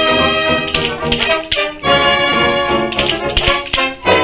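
Instrumental passage of a 1927 dance orchestra record: a horn section playing held chords over a steady rhythm, with a few sharp percussive accents.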